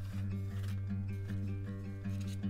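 Background music: a steady low note held under higher notes that change every half second or so.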